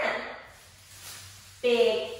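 A woman's voice chanting cheer words in two short calls, one at the start and another about one and a half seconds in.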